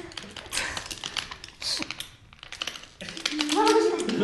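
Tipp-Kick tabletop football game in play: a quick, irregular run of small plastic clicks and taps as the kicker figures are pressed and the little ball is struck and knocked about the tabletop. A voice joins in near the end.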